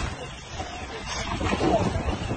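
A person's voice shouting or crying out, loudest about a second and a half in, over a steady background noise.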